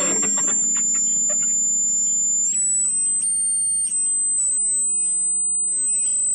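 A sustained high-pitched electronic whistle over a steady low drone. The whistle holds one pitch, steps up and warbles for a couple of seconds midway, then settles slightly higher and holds.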